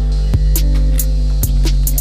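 A steady low hum runs throughout, crossed by a few short sharp clicks as fresh pea pods are split open by hand.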